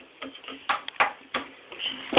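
Several sharp taps and clicks in quick succession over about a second, around the child's high-chair tray.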